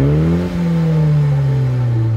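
2020 Mini John Cooper Works GP3's turbocharged four-cylinder engine and exhaust being revved while parked. The revs climb to a peak about half a second in, then fall slowly as the engine settles back.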